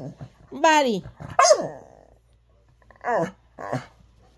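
A dog barking in four short barks, two in the first second and a half and two close together near the end.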